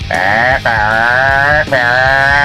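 A man's voice shouting a drawn-out "broom" in imitation of a revving car engine: three long held calls in a row, the first short and the next two longer.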